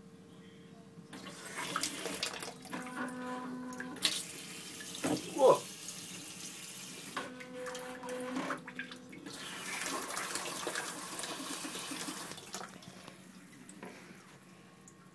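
Japanese electronic bidet toilet seat's wash nozzle spraying water into the toilet, a hissing spray that starts about a second in, dips around the middle and stops near the end. A brief loud pitched sound comes about five seconds in, with two short steady hums a few seconds apart.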